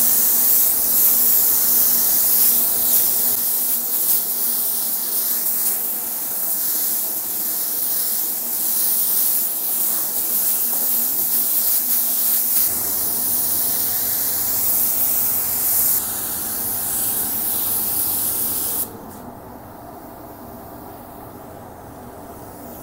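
Automotive paint spray gun with a 1.3 nozzle spraying a coat of HS clear coat diluted 10%: a loud steady hiss of air and atomised lacquer that swells and fades slightly as the gun sweeps. The hiss stops about 19 seconds in, leaving a lower steady background hum.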